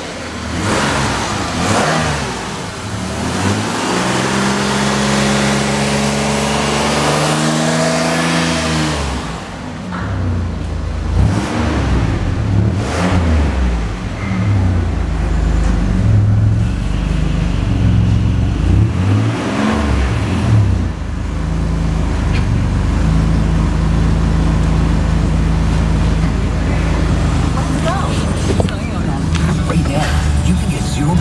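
A 2006 Chevrolet's 3.5-litre V6 engine running in a salvage yard, idling and revved up and down a few times.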